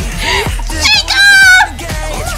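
A woman's brief, very high-pitched excited squeal that rises and then holds for a moment about a second in, over K-pop dance music with a steady low beat.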